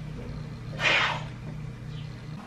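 Steam iron giving a short hiss of steam about a second in, lasting about half a second, over a low steady hum.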